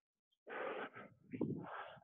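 A man breathing hard, out of breath right after a high-intensity exercise set: two heavy, noisy exhalations, one about half a second in and another about a second and a half in.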